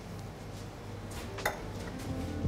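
Faint clinks of a small spoon against a glass jar of nuts, twice about a second and a half in, over a low steady kitchen hum.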